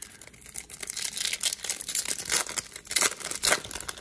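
Foil wrapper of a Topps Chrome baseball card pack being torn open by hand: a quick string of short rips and crinkles, thicker from about a second in.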